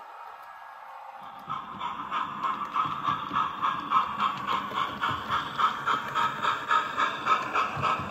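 OO gauge model locomotive (LNER No. 10000) running on the layout: a steady mechanical whirr of motor and gears, with a regular clicking about three times a second. It starts a little over a second in and grows louder as the train approaches.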